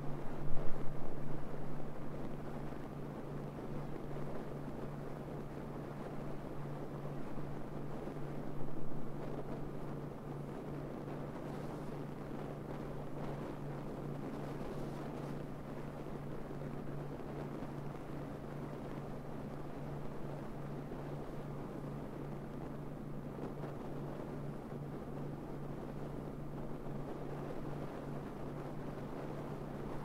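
Car driving at road speed, heard through a roof-mounted camera: a steady rush of wind on the microphone and road noise over a constant low hum, a little louder about a second in and again around nine seconds.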